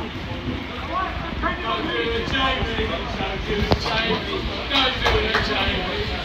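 Indistinct voices of footballers talking and calling on the pitch during a stoppage, over a steady low background rumble, with one short sharp knock about halfway through.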